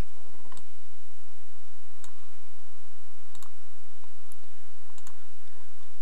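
A handful of sharp computer mouse clicks, spaced a second or so apart, over a steady low hum.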